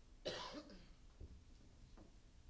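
A single short cough about a quarter second in, over quiet room tone, followed by a faint low knock about a second later.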